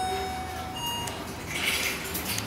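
Electronic beeping tones: one steady tone for well under a second, then a shorter, higher beep about a second in, over a low steady hum, with a brief rustling noise near the end.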